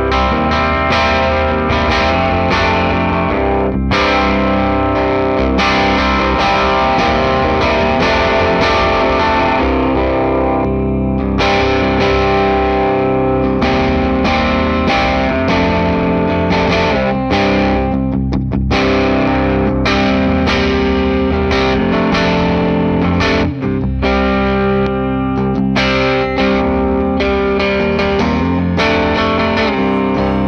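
FGN electric guitar with Fishman Fluence Modern active pickups, tuned to drop C, played through an amp with gain and no drive pedal: distorted heavy riffing, low and growly, with a couple of brief stops past the middle.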